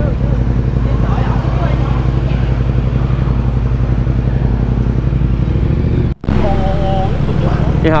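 Yamaha MT-07's 689 cc parallel-twin engine idling steadily. The sound cuts out sharply for a moment about six seconds in.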